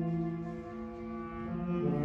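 Concert band playing a slow passage of long held chords, with low instruments sustaining deep notes and a fresh chord coming in near the end.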